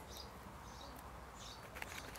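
Quiet outdoor ambience with a few faint, short bird chirps and one small click near the end.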